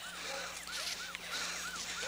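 Short, high chirping squeaks repeating evenly, about four a second, over a low steady hum.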